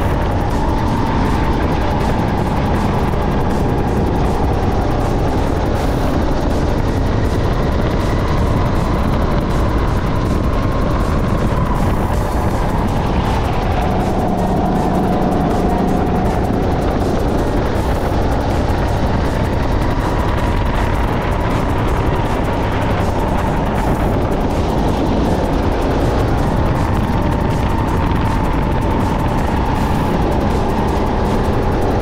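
Sodi SR5 rental kart's four-stroke engine running hard on track. Its pitch sags through the corners and climbs again on the straights, with one longer drop in the middle.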